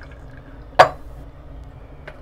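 A single sharp clink, a hard object knocked or set down on a hard surface, about a second in; otherwise only a faint low hum.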